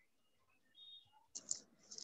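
Near silence on a video call, broken by two or three faint short clicks about a second and a half in.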